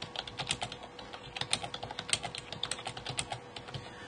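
Computer keyboard typing: a quick, irregular run of keystrokes as a short phrase is typed into a search box.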